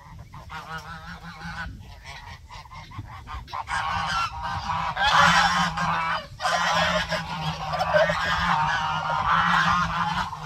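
A flock of domestic geese honking in a dense, overlapping chorus. It swells about four seconds in and stays loud.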